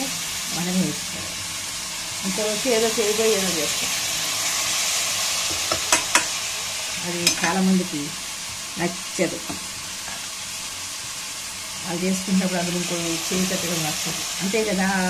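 Chicken pieces frying in hot oil in a pressure cooker, with a steady sizzle as they are stirred and turned with a steel slotted spoon. A few sharp clinks of the spoon on the pot come in the middle.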